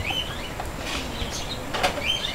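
Faint bird chirps in the background over quiet room tone, a few short calls scattered through the pause.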